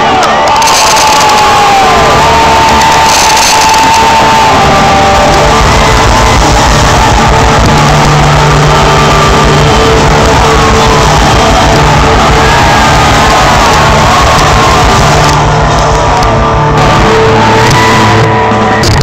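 A live rock band playing very loud, heard from within the crowd, with audience members shouting and whooping over it. A steady low beat comes in about five seconds in.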